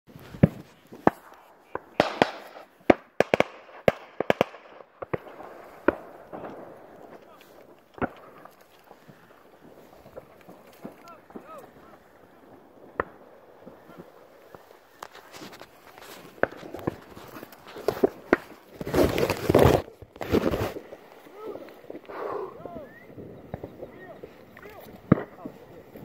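Many gunshots from waterfowl hunters' shotguns around the lake, popping off rapidly like a popcorn machine for the first few seconds, then single shots every second or so. A loud rush of noise lasting about two seconds comes near the end.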